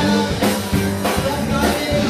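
Live rock band playing, with a steady drum beat and guitar. Over it runs a lead line that bends in pitch.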